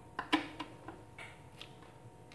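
Sharp plastic clicks from the push-button switches on an electric blender's base being pressed, the loudest about a third of a second in and a few lighter ones after; the blender motor has not yet started.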